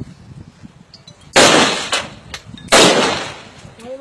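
Two rifle shots a little over a second apart, each a sharp crack that trails off in an echo.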